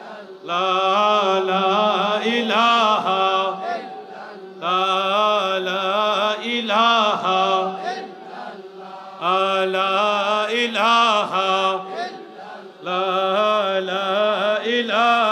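Islamic devotional chanting by male voice, sung in four repeated melodic phrases of about three to four seconds each, with short breaks between them.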